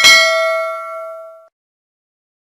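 Notification-bell "ding" sound effect: a single bell tone that rings out and fades, then cuts off about a second and a half in.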